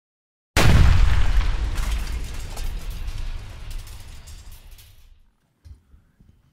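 A single deep boom that hits suddenly about half a second in and dies away slowly over the next four and a half seconds, an edited-in impact sound effect opening the video.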